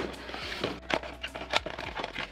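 Small cardboard box sliding out of a cardboard advent-calendar shelf and its flap being opened: a quick run of light scrapes and taps. Faint background music underneath.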